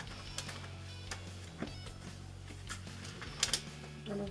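Pages of a book being flipped and leafed through by hand: a series of short papery flicks and rustles, with a steady low background tone underneath.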